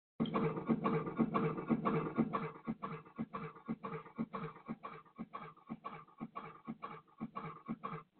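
Cash register sound effect: a fast, uneven run of mechanical clicks and rattles that starts suddenly, then grows quicker and somewhat quieter after about two and a half seconds.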